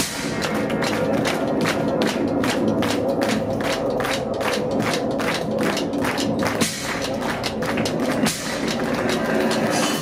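Loud live heavy metal music with a steady, fast pounding beat.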